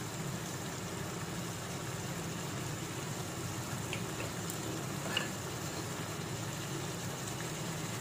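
Onions and tomatoes frying in oil in a kadai: a steady, quiet sizzle over a low hum, with a faint tap about four seconds in and another about five seconds in.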